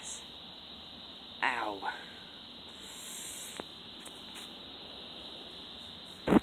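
A man's single short spoken word about a second and a half in, over a steady faint background hiss, with one faint click near the middle.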